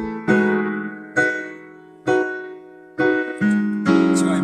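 Piano playing a slow tune, a chord struck about once a second, each ringing and fading before the next.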